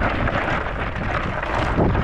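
Wind buffeting the microphone: a steady rushing noise with a heavy low rumble.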